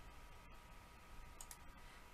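Near silence with a faint steady hum, broken by a quick double click about one and a half seconds in: a computer mouse click that advances the presentation slide.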